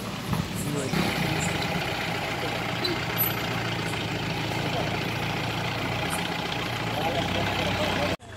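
A vehicle engine idling with a steady low hum and hiss, which gets louder about a second in, while voices talk in the background.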